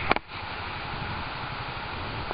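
Steady outdoor background noise with an uneven low rumble, picked up by a camcorder microphone, with a couple of short clicks right at the start.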